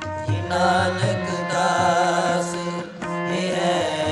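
Sikh kirtan: a man singing the shabad in a wavering, ornamented line over steady harmonium and tabla strokes. The voice comes in about half a second in and breaks off briefly near three seconds.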